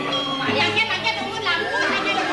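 Several voices over music with steady held notes.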